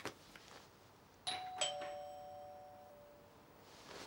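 Doorbell chiming a two-note ding-dong, the second note lower, each note ringing on and fading away over a second or two.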